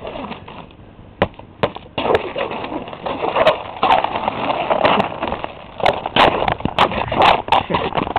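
Footsteps crunching and scraping on ice-crusted snow, with irregular sharp crackles of breaking crust.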